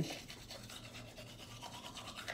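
Faint scrubbing of a toothbrush brushing teeth.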